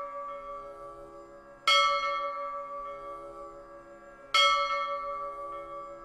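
A bell struck twice, about two and a half seconds apart, each stroke ringing on and fading slowly; the ring of an earlier stroke is still dying away at the start.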